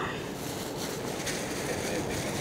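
Steady low background hiss with no distinct sound events.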